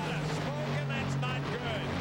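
Top Fuel dragsters' supercharged nitromethane V8s running at full throttle down the drag strip, heard as a steady low drone through the TV broadcast sound, with voices over it.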